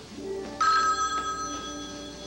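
Black rotary desk telephone ringing: one ring of its bell starts about half a second in and lasts about a second.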